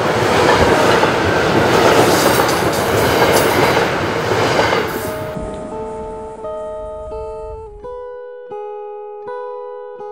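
A train passing close by, a loud rushing, rattling noise that fades away over the first five seconds. From about five seconds in, a guitar plays slow plucked notes, one about every 0.7 s.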